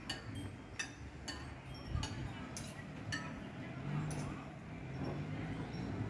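Light, sharp clinks, roughly two a second and uneven, some with a short ringing tail, over a low murmur of voices.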